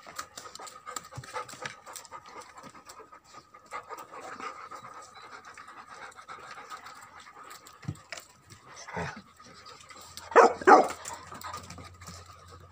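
Several Tibetan mastiff puppies lapping water from a plastic paddling pool, a busy patter of quick licks and small splashes. Two loud short sounds come near the end.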